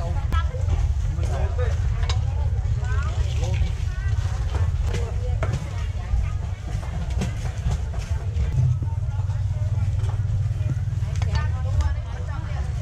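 Open-air market ambience: scattered voices of vendors and shoppers talking at a distance, with occasional clicks and knocks, over a steady low rumble.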